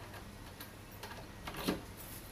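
Tubular lever lockset and door clicking as the locked door is pushed against its latch: a few light clicks, then a louder knock near the end.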